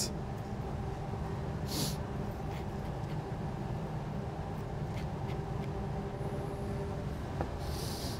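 Steady low hum of kitchen ventilation, with a short soft hiss about two seconds in, another near the end, and a few faint ticks as a salmon fillet is seasoned by hand with salt and a pepper mill.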